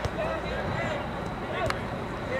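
Distant voices calling out across an outdoor soccer field over a steady background of outdoor noise, with one sharp knock about a second and a half in.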